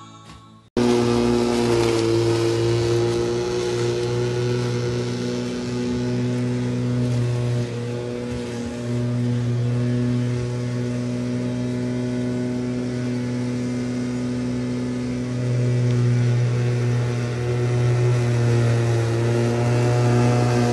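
Corded electric rotary lawnmower running, a steady motor hum that grows louder in the last few seconds as it is pushed nearer.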